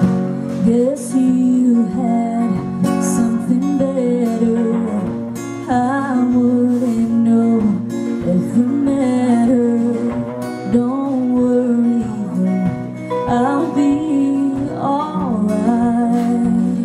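A woman singing a song live into a microphone, with held, bending notes over guitar accompaniment.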